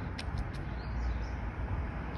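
Outdoor street background noise: a steady low rumble, with a few faint clicks in the first half second.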